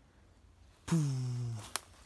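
A man's voice: about a second in, one drawn-out wordless vocal sound, falling in pitch and lasting under a second, followed by a single sharp click.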